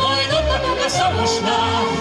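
A man and a woman singing a lively duet through a stage sound system, the voice held in sustained notes with vibrato, over instrumental accompaniment with a steady bass beat.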